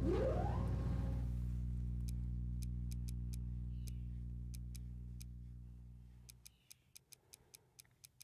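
Film sound effect of the mysterious box being used: a sudden low electronic drone with a whine rising over the first second, fading steadily and dying out after about six and a half seconds. Light, irregular ticks sound from about two seconds in.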